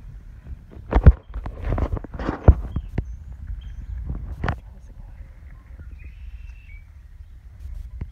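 Handling bumps and rustling from someone walking on grass with a handheld phone and a long leash: a few sharp knocks, the loudest about a second in and again at two and a half seconds, over a low rumble, with a faint high chirp around six seconds in.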